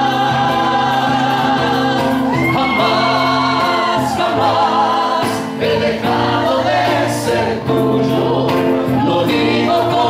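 Two men singing a song together into microphones, with acoustic guitar accompaniment, amplified through a bar's PA. The voices hold long, sliding notes over the music without a break.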